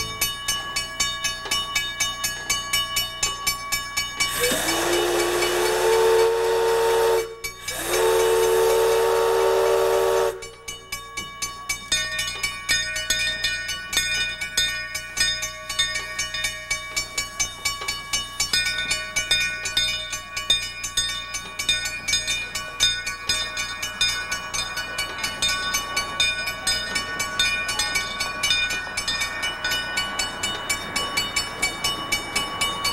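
Narrow-gauge steam locomotive whistle blown in two long blasts, about three seconds each, starting about four seconds in. Throughout, a railroad crossing bell rings steadily at about three strokes a second.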